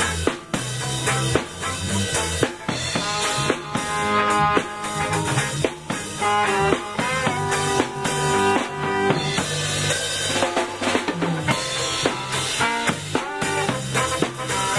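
Live ska band playing: drum kit and bass under a trombone and alto saxophone horn line.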